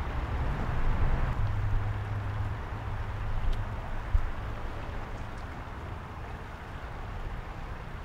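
Outdoor night ambience of a city riverside park: a steady hiss of distant traffic, with a low hum during the first few seconds and a single sharp click about four seconds in.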